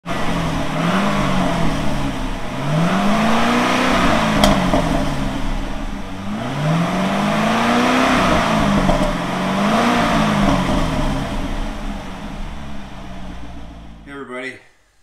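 C6 Corvette's V8 being revved in the garage, four blips of the throttle, each rising and falling back. A couple of sharp exhaust pops come as the revs drop.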